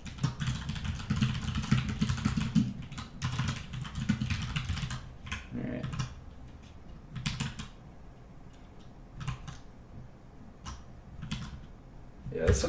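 Typing on a computer keyboard: a dense run of keystrokes for the first few seconds, then slower, scattered key clicks.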